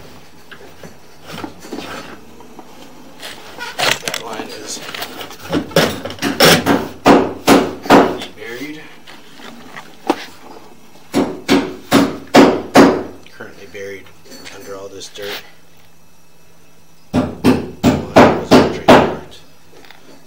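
Hard knocking in several bursts of rapid strikes, about three or four a second, with pauses between the bursts.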